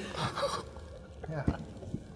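Sharp breathy gasps of reaction at the start, then a man's short 'ja' about a second in, with a sharp click just after it.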